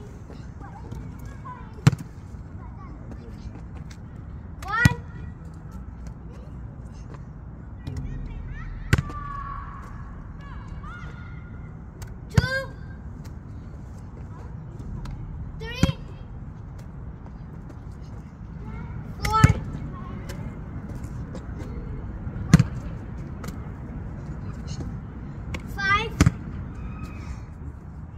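A rubber ball thumping against a brick wall and bouncing on asphalt, with eight sharp hits about three seconds apart, several with a short ringing ping, over a steady low outdoor background.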